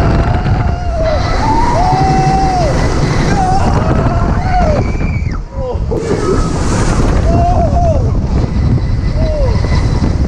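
Heavy wind buffeting the microphone as a swinging amusement-park thrill ride carries the riders through the air. Riders' drawn-out yells and screams come over it again and again.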